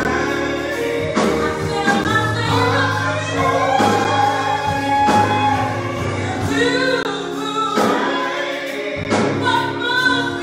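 Live gospel song: a small group of singers with keyboard accompaniment, sustained chords under the voices and a steady beat about once a second.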